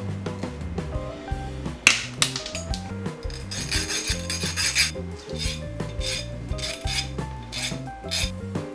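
A sharp snap about two seconds in as pliers cut through a steel M3 socket head bolt, then a hand file rasping in quick strokes over the rough cut, over background music.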